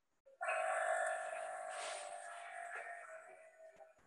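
Hydraulic unit of an HDPE butt-fusion welding machine releasing its pressure through the tap: a hiss with a steady whine that starts about half a second in and fades away over about three seconds.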